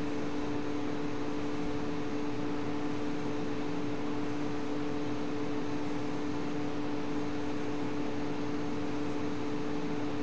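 A steady hum of two low tones over a constant hiss, unchanging.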